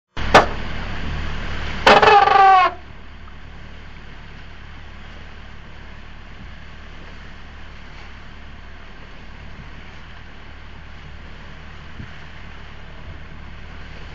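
Steady rush of wind and sea noise on a sailing yacht's deck, under way in rough water. It opens louder, with a sharp click and a brief pitched cry about two seconds in, then settles into the even noise.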